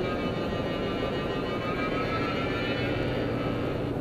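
Steady road and engine noise inside a car's cabin at freeway speed, with a sustained, slowly wavering tone above it.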